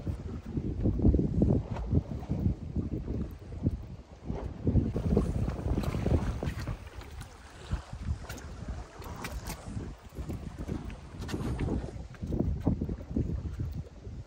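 Wind buffeting the microphone on an open boat deck at sea: a low rumbling noise that rises and falls in gusts.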